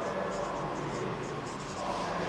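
Marker pen writing on a whiteboard: a quick run of short, high-pitched scratching strokes as a word is written.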